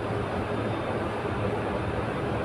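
Steady background noise with a faint low hum, unchanging throughout: room noise heard in a pause between speech.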